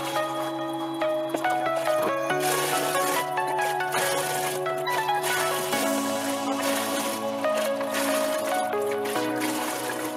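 Background music of sustained, held notes, shifting to a new chord about every three to four seconds.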